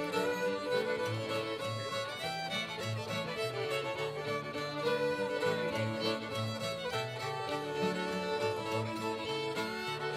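Two fiddles playing a lively fiddle tune together, backed by a strummed acoustic guitar with a steady alternating bass.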